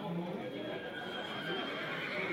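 A horse whinnying: one long, high call over background crowd chatter.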